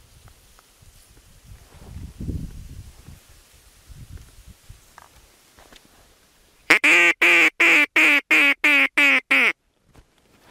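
Hunter's duck call (mallard-style caller) blown in a fast, loud run of about ten quacks, three to four a second, starting about seven seconds in. It is meant to lure in a duck that is flying toward the blind.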